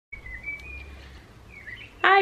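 A few short bird chirps over a low, steady background hum.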